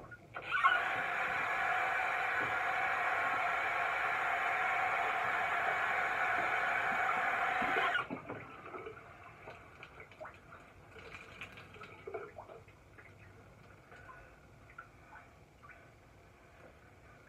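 Water running from a tap into a sink for about seven and a half seconds, then shut off suddenly, followed by faint clicks and handling sounds.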